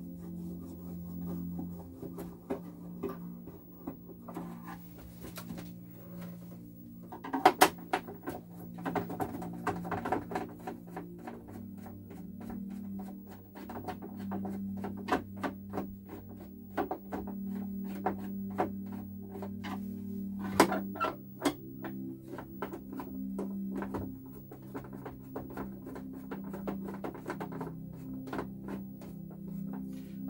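Screws being undone from a portable TV's plastic back cabinet with a screwdriver: a run of small clicks, ticks and knocks of the tool and the plastic, with a few louder knocks about seven and twenty seconds in. Underneath is a low steady hum that changes pitch every few seconds.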